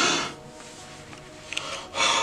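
A man breathing heavily through his open mouth: one loud, rasping breath right at the start and another near the end, about two seconds apart.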